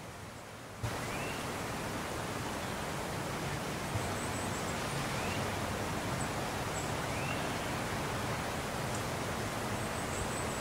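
Steady outdoor background noise, an even hiss, with a few faint short high chirps; it steps up in loudness about a second in.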